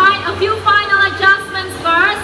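Background music: a melody of short held notes that step from one pitch to the next.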